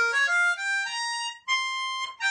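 Diatonic blues harmonica played solo, a rising run of single notes with a short break about one and a half seconds in, then a higher held note.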